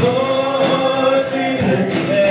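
Live worship song: a church band with voices singing, a long sung note held from the start, over guitar, keyboard and a steady drum beat.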